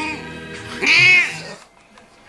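Domestic tabby cat meowing: a short call at the start, then a louder, longer meow about a second in that rises and falls in pitch.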